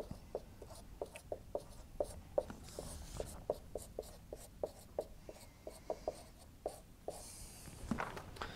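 Whiteboard marker writing on a whiteboard: a quick run of short squeaks and taps, a few a second, with a couple of longer rubbing strokes along the way.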